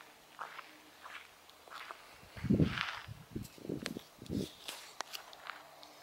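Footsteps on dry grass and dirt. A few soft steps come first, then louder steps with a dry crackle from about two seconds in until past four seconds.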